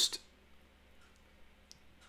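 Near silence: room tone with a couple of faint clicks, just after a man's word trails off at the start.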